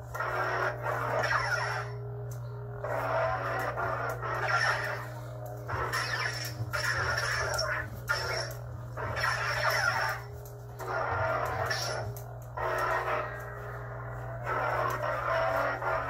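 Lightsaber sound board's steady electronic hum with a smooth-swing swoosh swelling and fading on each swing, about every two seconds.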